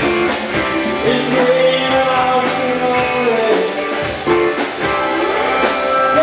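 Live rock band playing through a PA: guitars, keyboards and drums with held melody notes and a steady drum beat.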